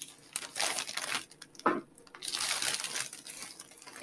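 Irregular crinkling and rustling of plastic or foil packaging as items are handled, with small clicks and one brief squeak near the middle.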